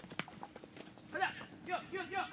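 Hoofbeats of a small pony trotting in a circle on a lead over a dirt track, a quick run of clops in the first half second, with short voice calls about a second in and near the end.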